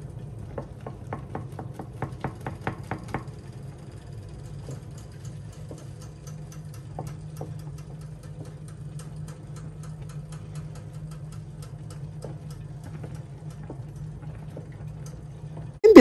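Chopped okra and spinach boiling hard in a stainless steel saucepan, with a wooden spoon stirring through it: a run of quick small pops and clicks, thickest in the first three seconds and then sparser, over a steady low hum.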